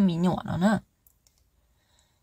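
A woman's voice narrating in Hmong for under a second, then a pause broken only by a couple of faint clicks.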